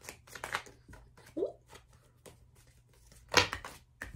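A deck of tarot cards being shuffled and handled, a quick run of soft card clicks and riffles, with one much louder slap of cards near the end.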